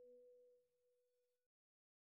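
Near silence: a held note of soft background music fades out over the first second or so, then total silence.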